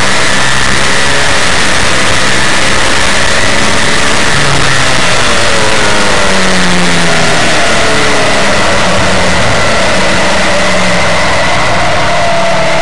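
An NHRA nitro Funny Car's supercharged V8 engine running very loud, heard from inside the cockpit. Its pitch shifts up and down partway through.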